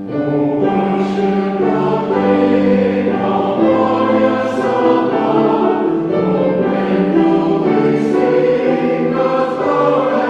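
Mixed church choir of men and women singing a hymn. The voices come in right at the start and carry on steadily.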